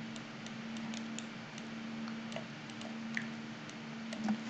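Faint, irregular computer mouse clicks over a steady electrical hum and hiss.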